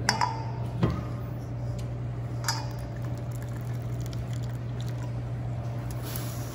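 Cooked bow-tie pasta being handled and tipped from a pot into a cast-iron pot of gravy, with a few sharp metal clinks of cookware. A steady low hum runs underneath.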